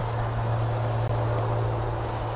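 Steady low hum with a faint even hiss, the background noise of the recording, with no distinct event.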